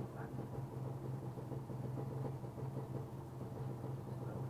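Steady low electric hum that runs unbroken.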